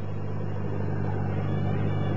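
Light aircraft's piston engine droning steadily, heard inside the cockpit, growing slightly louder, as the aircraft nears a stall.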